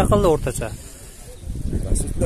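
A man's voice speaking briefly at the start, then open-air background noise, a steady hiss with a low rumble.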